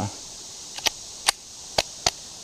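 Three short, sharp clicks about half a second apart from a Glock 30 .45 ACP pistol being handled in both hands while it is readied to fire.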